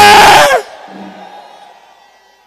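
A loud, high-pitched sustained shout, a whoop of excitement, that breaks off about half a second in, leaving the hall's echo and a low crowd murmur to fade away.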